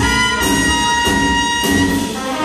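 Big band jazz played live: the brass section holds one long note over bass and drums.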